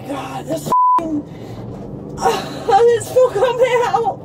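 A woman's voice in the back of a police car, cut by a short, loud single-pitch censor bleep a little under a second in, then long wavering wails and moans through the second half.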